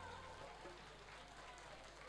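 Near silence as the music ends: the song's last held note dies away in the first half second, leaving faint hall room noise.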